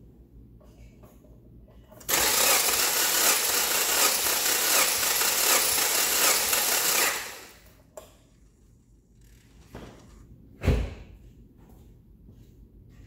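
A 2004 Subaru Forester's flat-four engine cranking on its starter for about five seconds without firing during a compression test, then winding down. A single loud thump follows a few seconds later.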